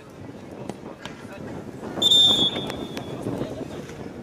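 A referee's whistle blown once: a short, shrill blast about two seconds in.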